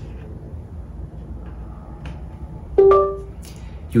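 Windows device-connected chime from a Surface Pro, sounding once near the end and fading over about half a second: the laptop has recognised the newly plugged-in USB-C display cable.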